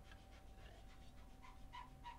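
Near silence with faint small clicks and breaths from a man sipping coffee from a metal tumbler, over a faint steady electrical tone.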